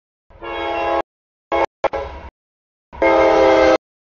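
Freight locomotive air horn sounding a series of blasts for a grade crossing: a blast under a second long, two short ones, then a longer blast near the end.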